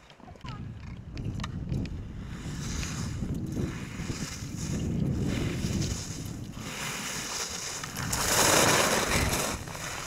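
Alpine ski edges carving and scraping across firm groomed snow, a loud hiss that swells as the skier passes close about eight seconds in, over a steady low rumble of wind on the microphone.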